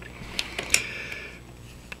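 A couple of small light clicks and a short faint rubbing: hands handling disassembled fountain pen parts on a cloth mat.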